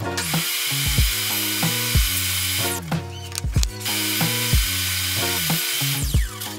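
Table saw motor running at full speed in two stretches with a short break between them, cutting off near the end, heard under background music with a steady beat.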